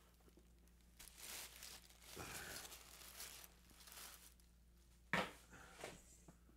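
Soft, intermittent rustling and crinkling of plastic and packing material being handled while rummaging in a parcel, with a short louder sound about five seconds in.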